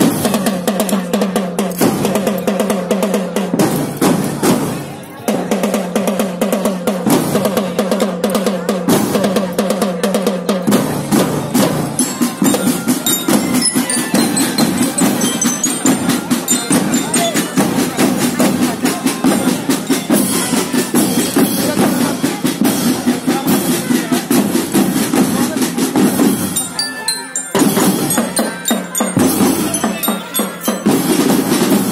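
Children's marching drum band playing: snare and bass drums beating a fast, steady rhythm, with a pitched melody line over the first ten seconds or so. The playing drops away briefly about five seconds in and again near the end.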